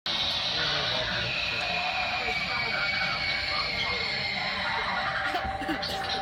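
Steady background din of music with indistinct voices, typical of shop ambience.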